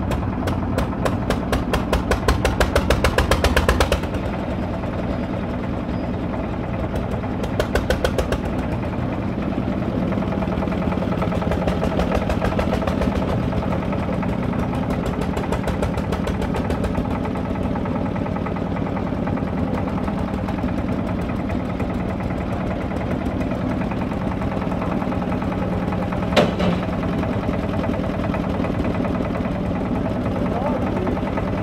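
The single-cylinder diesel engine of a towable concrete mixer and hoist running, with loud rapid exhaust beats for the first few seconds and again briefly around eight seconds in, then a steady hum. One sharp metallic knock near the end.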